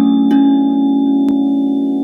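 Instrumental music: a held, ringing chord of bell-like tones, with a new note struck shortly after the start.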